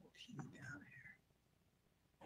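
Faint whispered or murmured speech for about the first second, then near silence.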